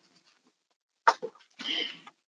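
A short cough in two bursts about half a second apart, starting about a second in after a moment of silence.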